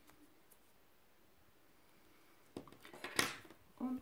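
Small craft scissors handled over foam petals: near silence for the first two and a half seconds, then a few light clicks and one sharp metallic click just after three seconds.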